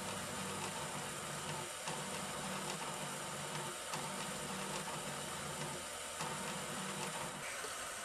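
New Matter MOD-t 3D printer's stepper motors driving the print bed back and forth during its automatic bed calibration, as the head is lowered step by step until it senses the bed. A steady motor hum that breaks off and resumes about every two seconds as the bed changes direction.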